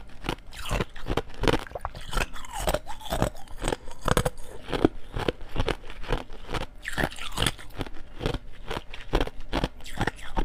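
Thin shell of ice being bitten and chewed close to a clip-on microphone: dense, irregular crunching and cracking.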